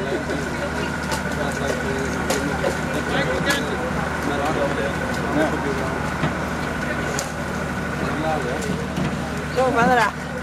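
An engine idling steadily, a low hum with a thin high whine over it, under the chatter of voices, with a few sharp knocks of footsteps on the metal gangway.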